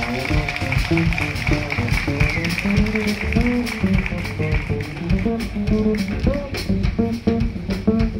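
Live small-group jazz: an upright double bass plucked in a moving line of low notes, with drum-kit cymbals ticking along behind it.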